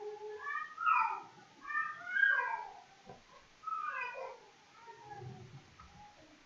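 A cat meowing in three short bouts of cries that fall in pitch, heard faintly in the background.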